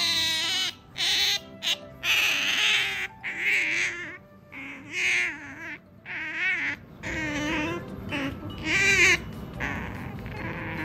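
Asian small-clawed otter giving a string of high, wavering, whining calls, about one a second, the begging calls of a clingy pet wanting attention.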